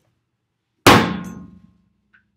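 A hand slammed down hard on a table once: a single loud bang just under a second in, with a short ringing tail that dies away.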